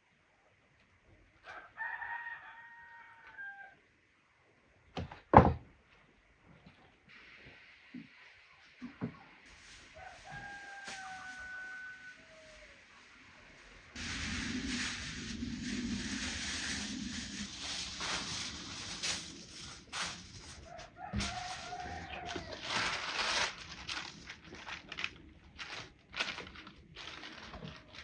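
A rooster crowing three times, each a long held call that drops at the end. A single sharp knock about five seconds in is the loudest sound. From about halfway on, a steady rushing noise with scattered clicks underlies it.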